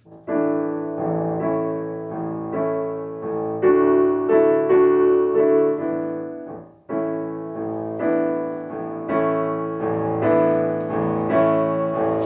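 Grand piano played in a moving passage of chords struck about twice a second, with a brief break a little past the middle before the playing picks up again.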